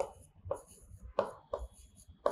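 Marker pen writing on a board: about four short strokes across two seconds.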